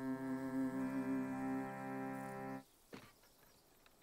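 Parlor reed organ playing slow, held chords that stop abruptly after about two and a half seconds, followed by a faint knock.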